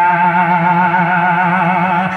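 A man's voice holding one long sung note with a steady vibrato, reciting a devotional kalam into a microphone.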